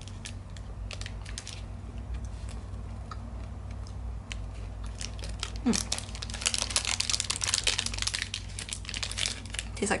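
Bite and faint chewing of a crispy, chocolate-coated protein bar, then crinkling of its foil wrapper from about halfway through, thick with crackles until near the end.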